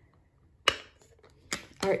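A single sharp plastic click from stamping supplies being handled, about two-thirds of a second in, followed by a fainter tap near the end.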